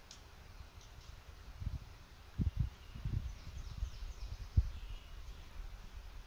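Quiet woodland ambience with a few faint, short bird chirps and several dull low thumps on the microphone, the loudest a little past the middle.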